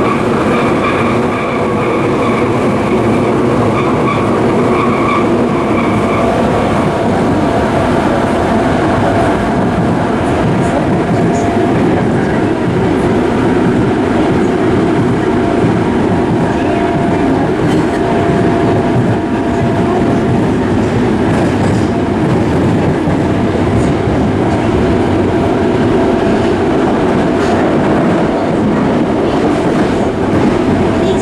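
Yokohama Municipal Subway 3000A-series train running at speed, heard from inside the car: a steady loud rumble of wheels on rail, with an occasional clickety-clack from the rail joints. A faint high whine fades out about seven seconds in.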